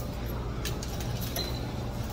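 Steady low hum of commercial laundromat washing machines, with a light metallic clink about two-thirds of a second in and a short high beep near the middle.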